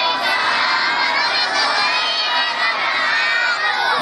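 Large crowd of children shouting together: many voices held in one long call that cuts off abruptly near the end.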